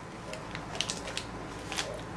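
Crunchy nut-and-granola snack being chewed, a few crisp crunches scattered through.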